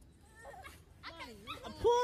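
High, wavering voice sounds that rise and fall, faint at first and louder near the end, from girls straining while hanging from a pull-up bar; a single knock sounds just before the end.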